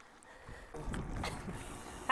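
Wind buffeting the microphone while cycling into a headwind: a low rumble that comes up about half a second in and holds.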